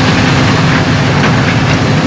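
Excavator's diesel engine running steadily, a loud low drone.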